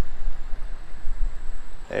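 Low rumble of wind buffeting an outdoor microphone, steady throughout, with a faint even hiss above it.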